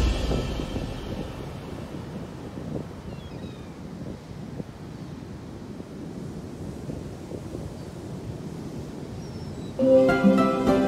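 Rough surf breaking and washing ashore on a pebble beach, a steady rushing noise with wind on the microphone. A few faint gull cries come about three to four seconds in.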